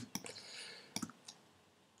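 Computer mouse clicking: a few quiet, sharp clicks, one at the start, another just after, and a close pair about a second in, each click placing a point of a pen-tool path.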